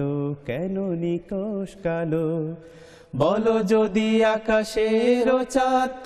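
Male voice singing a Bengali Islamic devotional song in praise of Allah. For the first two and a half seconds the voice wavers through ornamented melodic turns. After a brief pause, from about three seconds in, it returns louder and higher on a long held line.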